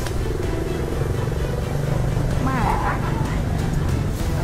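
A motor vehicle engine running with a steady low rumble, under sustained background music. A short wavering vocal sound rises and falls about two and a half seconds in.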